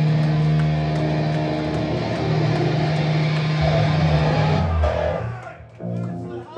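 Live metal band at full volume, distorted electric guitar and bass holding a ringing chord over cymbals, then dying away about five seconds in as the song ends.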